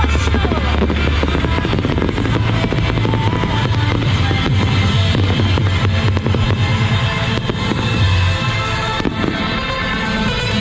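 Fireworks crackling in rapid, dense bursts, over loud music with a deep, steady bass.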